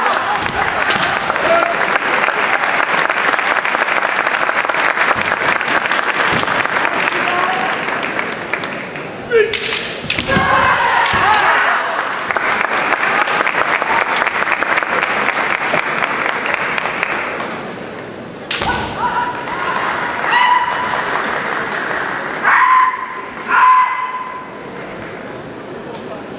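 Kendo bout with fencers' shouted kiai and sharp knocks of bamboo shinai strikes and stamping on the wooden floor, the loudest a little over nine seconds in and again near eighteen seconds. The bout runs over a steady din of voices in a large hall. Long held shouts come near the end.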